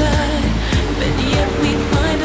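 Pop song with a singing voice over a steady drum beat.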